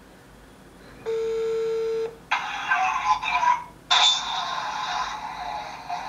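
A phone on speaker gives one ringback tone lasting about a second. About two seconds in the call connects and a harsh, tinny noise comes through the phone's small speaker, which the caller later hears as the sound of fighting.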